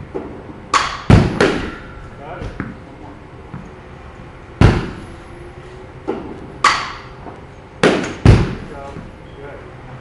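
A bat hitting balls in a batting cage: about seven sharp cracks, some in quick pairs less than half a second apart. The loudest come about a second in, near the middle and near the end.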